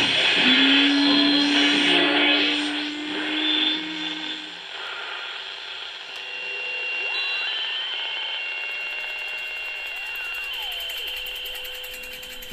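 Podcast intro soundscape of electronic music and sound effects. A rushing noise with a low held tone fades about four to five seconds in. It gives way to softer synthesized tones that slowly glide up, hold, and glide back down.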